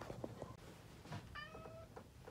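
A house cat meows once, a short faint call about a second and a half in, after a few light knocks of a phone being handled.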